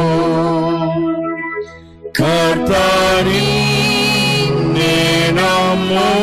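Telugu Christian hymn, sung with instrumental accompaniment. The music thins out about a second in, almost stops just before two seconds, then comes back in fully with the next line.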